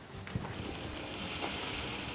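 Powdered sucrose pouring from a cut sachet into a bottle of Oxybee oxalic acid solution, a steady soft hiss. A faint click about a third of a second in.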